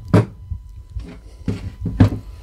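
Handling knocks as a cordless angle grinder is moved and set down on a wooden workbench: one sharp thump a fraction of a second in, then a few lighter knocks.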